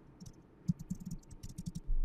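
Typing on a computer keyboard: a quick, uneven run of key clicks as a short name is typed in.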